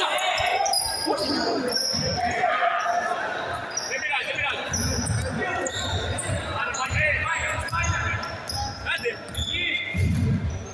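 Basketball being dribbled on a wooden gym floor, its bounces echoing in the hall and coming in quick runs from about halfway through. Sneakers squeak briefly and often, and players shout to one another.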